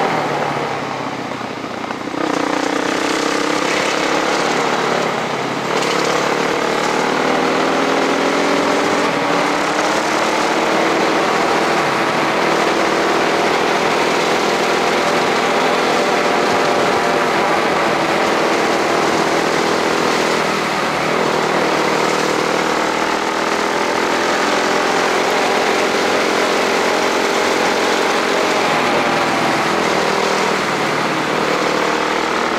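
Onboard sound of a vehicle driving a paved forest road: the engine note rises and falls with speed over steady wind and road noise. It eases off in the first two seconds, then picks up again.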